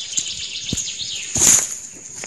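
Footsteps crunching through dry leaf litter, with the loudest step about one and a half seconds in. A steady high-pitched chirring sound carries on behind them.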